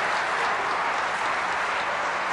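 Audience applauding, a steady wash of many hands clapping.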